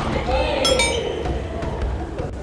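Badminton play on a wooden gym court: court shoes give two sharp squeaks on the floor about two-thirds of a second in, over a player's voice calling out.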